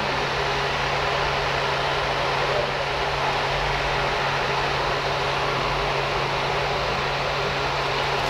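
Steady rushing noise with a low, even hum beneath it, the kind of continuous room noise a fan or air conditioner gives.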